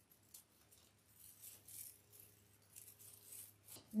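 Faint, irregular rustling and crinkling of burlap deco mesh being gathered and handled on a wire wreath form.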